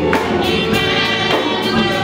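Live gospel music: several voices singing together over a band of drum kit and electric guitar, with regular drum and cymbal strikes.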